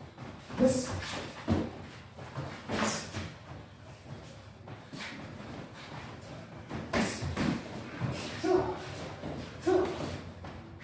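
Martial-arts point sparring with padded gloves and foot gear: about eight irregular sharp thuds and slaps of strikes and stamping feet, with a few short shouts in between.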